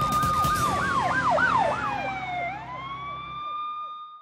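Police-siren sound effect in a TV news ident: a held wail that breaks into fast yelps about half a second in, drops, then rises and holds again. Under it runs a low music bed that stops about three and a half seconds in.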